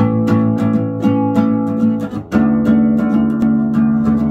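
Nylon-string classical guitar strummed in a steady rhythm, about four strokes a second, starting abruptly and changing chord a little over two seconds in.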